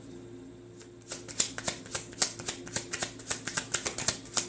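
A tarot deck being shuffled overhand by hand: a quick, uneven run of light card slaps and flicks, several a second, starting about a second in.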